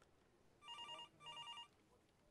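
Telephone ringing: two short rings in quick succession, the British double-ring pattern.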